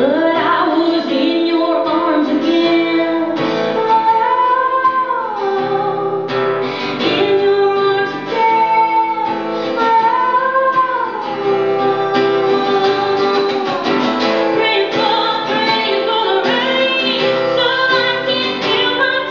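A woman singing with her own acoustic guitar accompaniment, live, with long held and gliding vocal notes.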